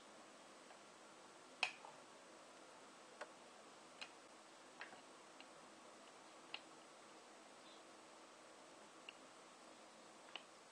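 Near silence broken by faint, sparse clicks and ticks, about seven of them, the loudest nearly two seconds in: small tapping contacts as an LED's thin wire leads are handled against the screw and copper-wire terminals of a homemade lemon battery.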